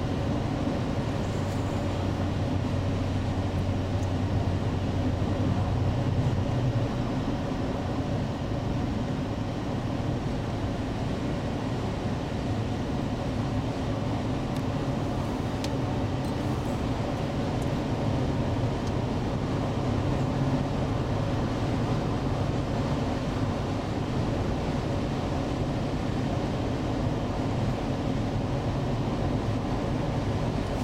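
Steady road and engine noise inside the cabin of a 2003 Acura MDX moving at highway speed: a low, even rumble, with the low drone a little stronger for the first several seconds.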